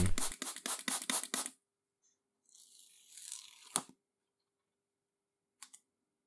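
Hand trigger sprayer squirting soapy water in about seven quick pumps over the first second and a half. A brief papery rustle follows about three seconds in, then a sharp click, and a faint tick near the end.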